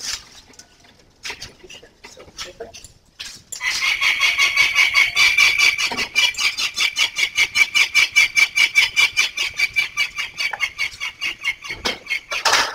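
A young falcon calling: a long, fast run of harsh repeated notes, about six or seven a second, that starts about three and a half seconds in and keeps going. Before it, a few faint knocks.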